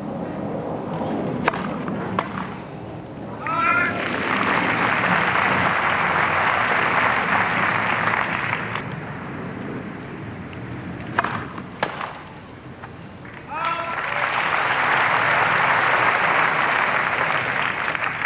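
Tennis racket strikes on the ball during a rally, then a short shout and a burst of crowd applause lasting about five seconds. The same pattern comes again for the next point: a few ball strikes, a shout, and applause through the last few seconds.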